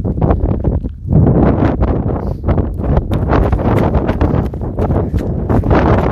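Wind buffeting the phone's microphone in a heavy, uneven rumble, with footsteps crunching on a gravel path.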